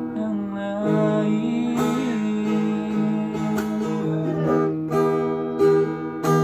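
Acoustic guitar being strummed, its chords ringing on between a few sharper strokes.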